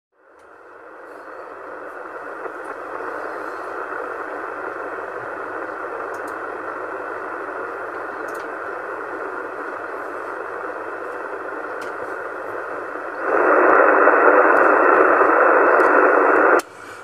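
Single-sideband (USB) hiss from a CB transceiver's receiver on 27 MHz: steady static limited to a narrow voice band, fading in over the first couple of seconds. About thirteen seconds in it gets louder. A faint low hum runs underneath.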